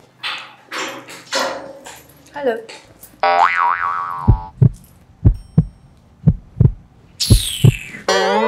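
Comedy sound effects: a springy boing, then a run of low thuds in pairs about a second apart, and a whistle falling in pitch near the end. Short non-verbal vocal sounds come before them.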